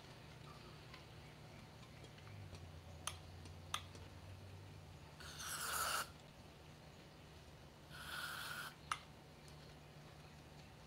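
Aerosol carburetor cleaner sprayed in two short hissing bursts into a small carburetor, about five seconds in and again about eight seconds in, flushing debris from its passages. A few sharp clicks come between and after the bursts.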